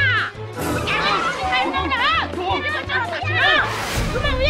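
Several high-pitched voices shouting and shrieking in quick short cries, over background music with a steady low bass.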